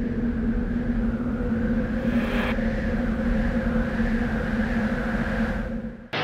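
Cinematic logo sting: a steady low drone with a held hum and a rushing swell above it, and a brief brighter swish about two seconds in. It cuts off suddenly near the end.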